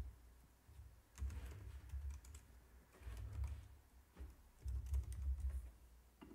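Typing on a computer keyboard: faint key clicks in a few short bursts of keystrokes.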